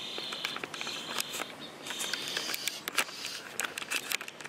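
Thin stream of motor oil trickling from a Corvette's drain hole into a plastic drain pan, with scattered small splashes and clicks. A high insect chirring comes and goes behind it.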